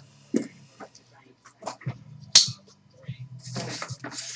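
A sealed cardboard case handled on a desk: a few light knocks and scuffs, one sharp knock just past halfway, and cardboard rustling near the end as the case is picked up.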